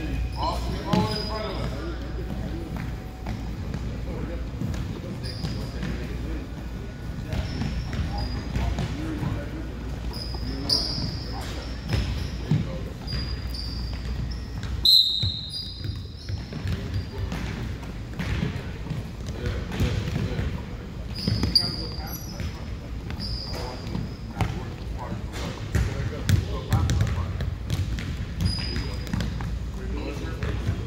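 Many basketballs dribbled low and fast on a hardwood gym floor by a group of players, the bounces overlapping in a continuous quick patter, with sneakers squeaking now and then.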